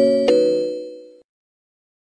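The closing notes of a short chiming logo jingle: two bell-like notes struck about a third of a second apart, ringing and fading, then cut off suddenly a little over a second in.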